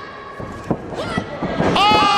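A wrestler's body slams onto the ring mat in a spinning DDT, a single sharp thud about two-thirds of a second in. Near the end comes a drawn-out "ohh" from a voice, falling in pitch.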